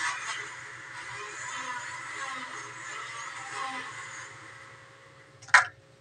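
Steady hissing background noise that fades away over the last second or so, over a faint hum, with one sharp knock near the end.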